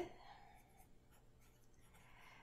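Faint sound of a felt-tip marker writing on paper, barely above near silence.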